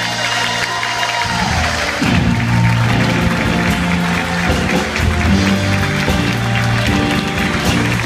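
Live big band playing an instrumental passage, brass section, electric guitar and drums, with sustained bass notes, while the audience applauds.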